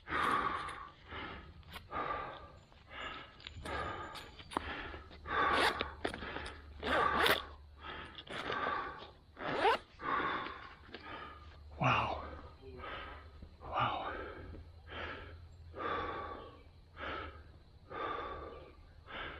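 A man breathing hard from exertion while walking, with loud, rasping breaths at about one a second.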